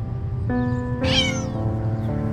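A kitten meows once, a short high call about a second in, over slow piano music.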